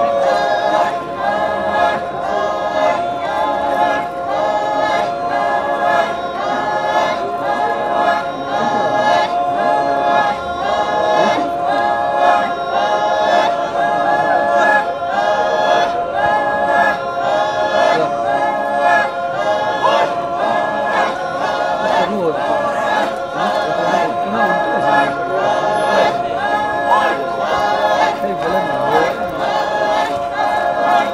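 Rengma Naga men and women singing a folk song together in chorus while dancing, unaccompanied by instruments, in short repeated phrases with a steady rhythm.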